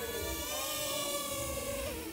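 Small quadcopter drone's propellers whining steadily as it descends to land in a person's hand.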